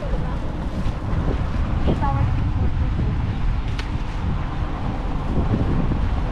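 Wind buffeting an outdoor camera microphone as a steady low rumble, with a brief snatch of voice about two seconds in.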